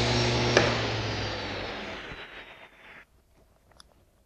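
SawStop table saw running, then switched off with a click about half a second in: the motor and blade wind down, a high whine falling slowly in pitch as the sound fades out over about two and a half seconds.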